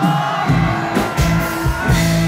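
Live rock band playing loudly through a PA system: repeated drum hits over a low bass line and sustained melody notes.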